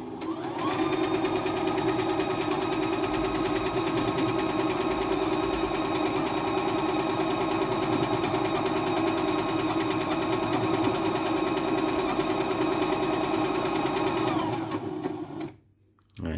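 CNY E960 computerized sewing machine stitching a buttonhole in its automatic buttonhole mode. The motor speeds up over the first second, runs at a steady stitch rate, then slows and stops shortly before the end.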